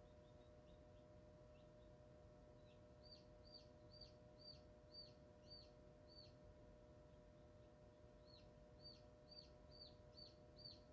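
Chick peeping in quick runs of short falling peeps, about two a second, with a pause of a couple of seconds in the middle. Under it runs the steady hum of the incubator's fan.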